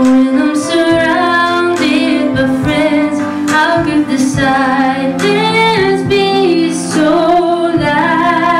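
A young woman singing a slow song into a microphone, her voice amplified over steady instrumental accompaniment.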